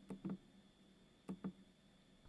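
Two pairs of faint, short clicks from the band button on an RS918 HF transceiver being pressed to step the radio up through the bands, one pair near the start and one a little past halfway.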